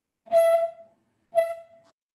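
Two short beeps of the same steady pitch, about a second apart, each starting with a click.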